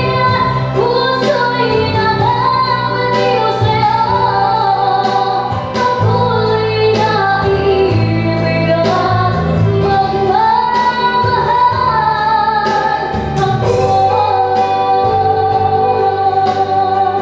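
A young woman singing into a handheld microphone, her voice gliding and holding long notes, over instrumental backing with bass and a regular beat.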